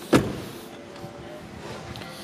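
The door of an Alfa Romeo 159 swung shut, a single solid thump just after the start that dies away quickly. A quiet steady background with a faint hum follows.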